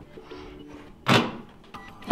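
A single sharp knock about a second in as the NVIDIA GRID K1's circuit board is prised free of its black frame, with the parts knocking together or onto the wooden desk.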